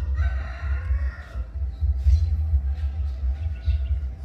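A rooster crowing once, a call of a little over a second near the start, over a steady low rumble.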